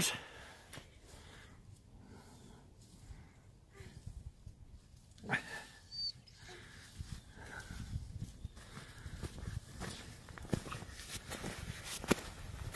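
Faint crunching and rustling of packed snow and a snowsuit as a child crawls through a snow tunnel, with a short rising sound about five seconds in.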